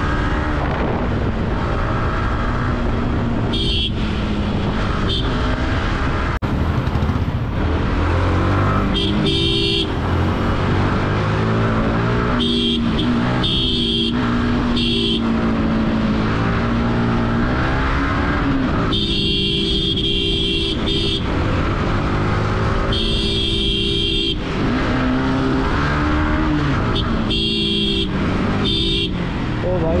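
Sport motorcycle engine running at city-traffic speed, its pitch rising and falling with the throttle. Vehicle horns honk around it in several bursts of a second or two each.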